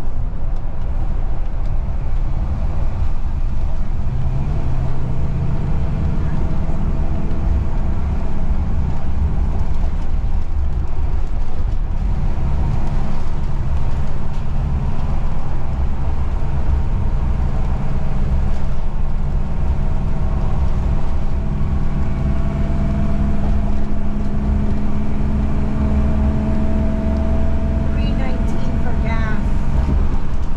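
Motorhome driving on the highway, heard from inside the cab: a steady low drone of engine and road noise, with a faint whine rising slightly in pitch over the last several seconds.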